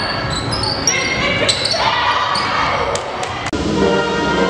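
Indoor volleyball practice in a gymnasium: sneakers squeaking on the hardwood court, a few sharp ball hits, and players calling out, echoing in the hall. About three and a half seconds in, the sound cuts to orchestral music.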